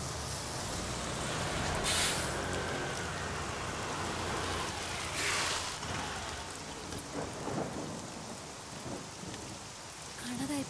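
Heavy rain falling steadily, with a bus engine running low underneath and two short hisses, about two and five seconds in.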